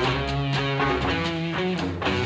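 Blues-rock band playing an instrumental passage live: electric guitar notes changing several times a second over a steady bass line and drums.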